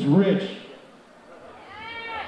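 A man's voice over a PA system, a short burst of talk followed by a drawn-out vocal sound that rises and falls in pitch near the end.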